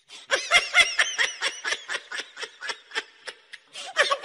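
High-pitched laughter: a fast run of short giggling notes, about five a second, loudest in the first second.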